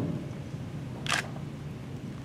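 Quiet room tone with a faint low hum, and one short, sharp click-like hiss about a second in.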